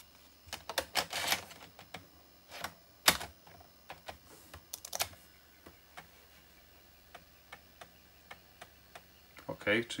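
Clicks and clatter of a 3.5-inch floppy disk being swapped into the laptop's floppy drive, the loudest a sharp click about three seconds in. In the second half come faint, evenly spaced ticks, a few a second, as the drive starts reading the disk.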